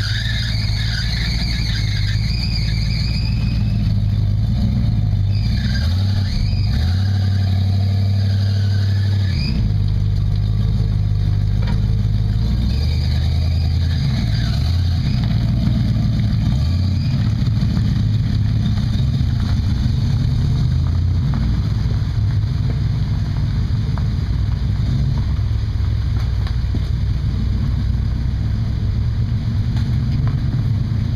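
Old Dodge Power Wagon truck engines running and revving under load as the trucks crawl through deep mud, the engine pitch rising and falling. High, wavering squeals come and go during the first half.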